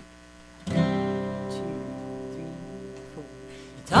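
Acoustic guitar and upright bass sound an opening chord just under a second in, left ringing and slowly fading for about three seconds. A singing voice comes in right at the end.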